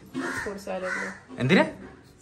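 Crow cawing several times, the last call sharply rising in pitch.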